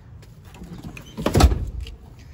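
A single loud, dull thump about a second and a half in, the knock of something hitting the car's interior trim or seat, with faint handling rustle before it.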